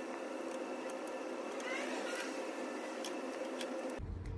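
Steady low background hum with a few faint, light clicks as a plastic truck grille panel is handled and pushed onto its clips.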